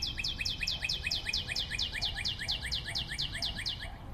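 Cartoon sound effect: a fast, even run of short, high, downward-sweeping chirps, about seven a second. The whole run drifts slowly lower in pitch and cuts off suddenly near the end.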